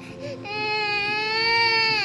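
A fussy toddler crying: one long cry, starting about half a second in, holding a steady pitch and dropping at the end.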